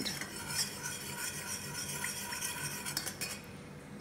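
A metal spoon stirring a thin liquid sauce in a stainless steel saucepan, clinking and scraping against the pan, easing off about three seconds in.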